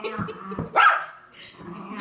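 Miniature schnauzer barking in play over a new ball, with one loud bark a little under a second in among shorter calls.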